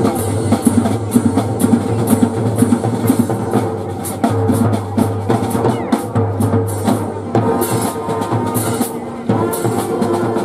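Marching band drumline playing a steady cadence on snare and bass drums, loud and driving throughout.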